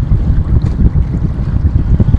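Wind buffeting the microphone: a loud, gusty low rumble.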